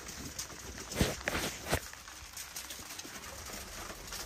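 Phone handling noise: a few short knocks and rubs against the microphone in the first two seconds as the rain-wet camera lens is wiped by hand, then a faint steady hiss of rain.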